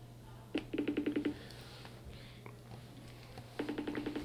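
An iPhone's outgoing video call ringing through its speaker: a short burst of rapid beeps about half a second in, repeated about three seconds later.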